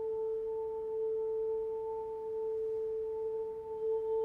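Chamber choir singers holding one long sustained note in unison: a steady, pure-sounding drone with no vibrato and its octave faintly above it.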